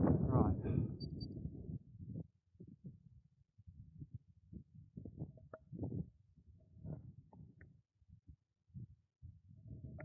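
Wind buffeting the microphone in irregular low rumbles, heaviest in the first couple of seconds and then coming in short gusts.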